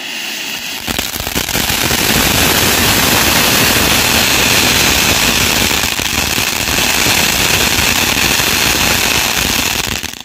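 Ground fountain firework (a crackling shower) spraying sparks with a loud, dense crackling hiss. It builds over the first two seconds, holds steady, and cuts off at the very end.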